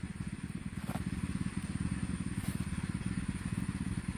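A small engine running steadily in the background, a fast, even low throb, with a couple of faint clicks.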